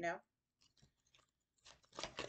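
Deck of tarot cards being shuffled by hand: a few faint flicks, then a quick run of card riffles and slaps starting near the end.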